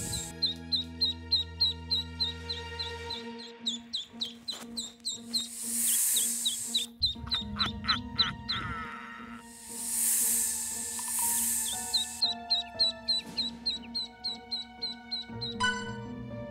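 Ducklings peeping in runs of short, high chirps, a few a second, over background music with sustained notes and recurring soft swells.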